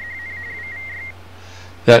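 SSTV FSK identification sent at the end of a slow-scan TV image transmission: a single tone near 2 kHz flicking rapidly between two pitches for about a second, then cutting off. It carries the sender's callsign, W6FCC.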